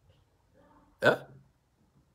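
A man's single short, sharp vocal sound about a second in, dropping quickly in pitch; otherwise quiet.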